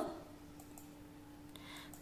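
Faint steady hum with a few faint clicks, about two near the middle and two more near the end.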